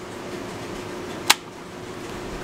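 One sharp click of a toggle switch on a bowling pinsetter's control box about a second and a half in, over a steady low hum.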